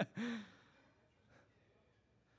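A man's short voiced sigh into the microphone, trailing off from laughter in the first half second, followed by quiet room tone.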